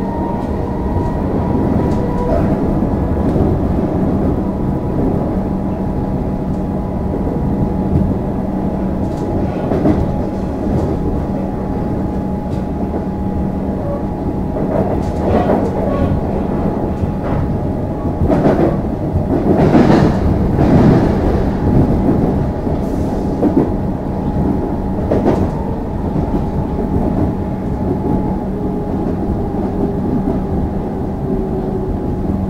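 Alstom Comeng electric suburban train heard from inside the carriage while running: a steady rumble of wheels on rail with a constant hum. About halfway through, a run of louder clatter and bangs as the wheels cross points in the yard trackwork.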